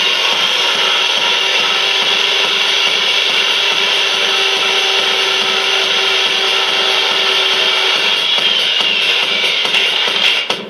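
Electronic music intro: a loud, steady, grinding noise drone with a held low note under it and a tone that slides downward near the end, with no beat yet.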